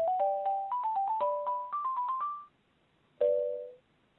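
Telephone hold music during a call transfer, heard over the phone line: a short electronic keyboard tune of plucked notes climbing in steps, which breaks off about two and a half seconds in and is followed near the end by a brief held two-note chord.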